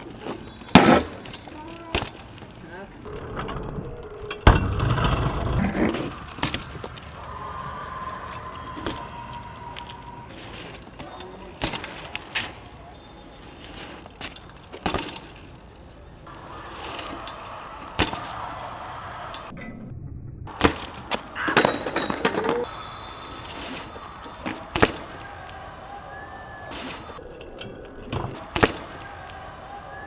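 BMX bikes riding on rough concrete, with repeated sharp clanks and knocks from landings and metal parts striking the concrete. A loud rumble comes about four and a half seconds in.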